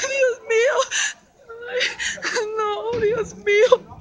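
A woman crying out in panic, repeating 'Dios mío' in a high, wavering, whimpering voice, with a short break a little over a second in.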